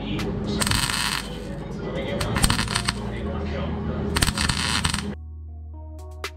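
Welding on the car's chassis steel in short bursts of a few tenths of a second, each a sharp crackle, with background music underneath. At about five seconds the welding stops and only the music continues.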